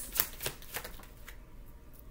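A deck of tarot cards being shuffled by hand: a quick run of crisp card slaps over about the first second, then trailing off.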